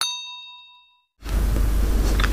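A chime sound effect struck once, ringing with several clear tones that fade away over about a second. Just past halfway a steady low hum cuts in.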